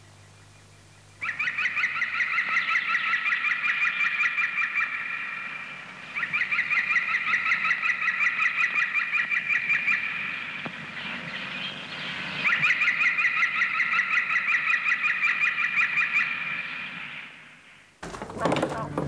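Birds calling in a rapid, chattering stream, in three long stretches with short breaks between them.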